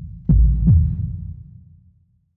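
Heartbeat sound effect: a deep double thump, each beat dropping in pitch, starting about a third of a second in, then fading out with a low rumble.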